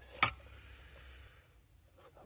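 A single sharp click as an amber bayonet indicator bulb is pushed and twisted home into its plastic lamp-holder socket, followed by faint handling noise.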